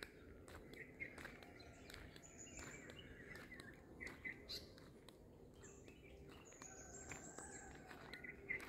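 Faint birds chirping in the woods, with two long thin high whistled notes, one about two seconds in and another near the end, over a low steady outdoor background.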